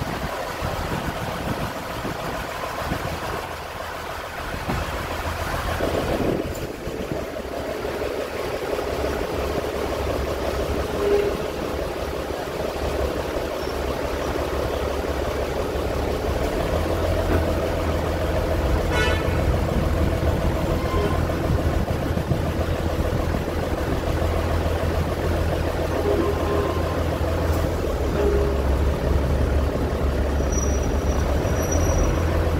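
Diesel railcar running along the track: a steady engine drone with a low hum, growing a little louder in the second half.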